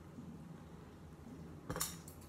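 A quiet room, then a single short clink of a small hard object near the end.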